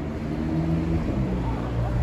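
A motor vehicle's engine running close by, its low hum shifting in pitch every so often, over a faint murmur of voices.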